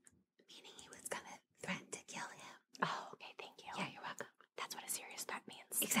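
Quiet whispered speech: a person whispering in short phrases.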